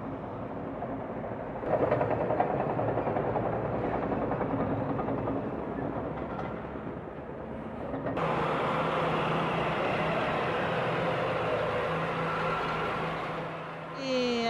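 Diesel engines of heavy road-building machinery running continuously. The sound changes abruptly about eight seconds in to a steadier, even engine drone with a low hum.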